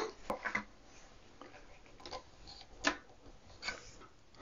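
A few faint clicks of a screwdriver on hard plastic, the clearest about three seconds in: the screwdriver taken up and used to pop open the snap-off bolt covers on a toilet seat hinge.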